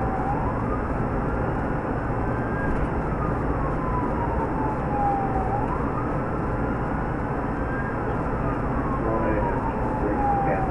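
Police siren on a slow wail, rising and then falling in pitch about once every five seconds, twice over. Under it is the steady road, wind and engine noise of the cruiser driving at speed.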